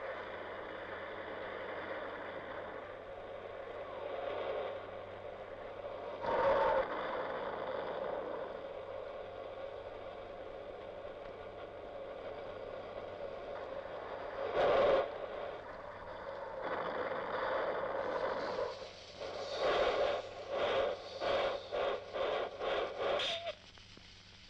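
Ground fountain fireworks spraying sparks with a steady hiss that swells a few times into louder bursts. Near the end comes a quick string of about eight sharp pops, roughly two a second.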